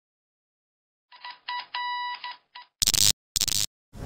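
Electronic intro sound effect: starting about a second in, a quick run of short beeps with one held a little longer, then two short, louder bursts of static hiss.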